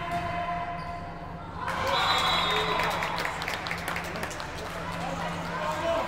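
A volleyball rally in a gym: ball hits and bounces, with voices throughout. About two seconds in it gets suddenly louder, with players shouting and spectators cheering as a point is won.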